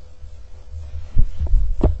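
A low, steady rumble with three dull thumps in the second half, the first and loudest a little after a second in.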